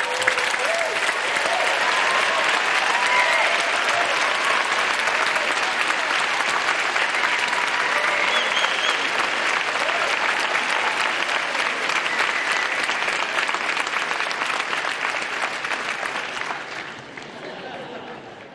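Large audience applauding steadily, with a few voices calling out among the clapping; the applause fades away near the end.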